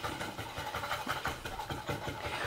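A spoon stirring a dressing of water, vinegar essence, sugar, salt and pepper in a plastic measuring jug: a quick, steady, rhythmic swishing.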